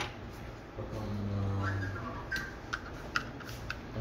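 A man's drawn-out "uhh" of hesitation, then a handful of light clicks and taps as a small screwdriver and fingers work against the plastic housing of an EMKO panel controller.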